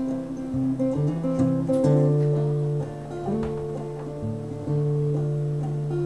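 Solo acoustic guitar playing an instrumental passage of strummed and picked chords, the chords changing every second or so with the notes ringing on, and no singing.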